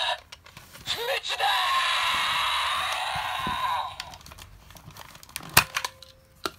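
Electronic sound effect from a Kamen Rider Ex-Aid transformation toy's small speaker: a noisy, wavering burst lasting about three seconds, starting about a second in. It is followed by sharp plastic clicks and knocks as the toy is handled.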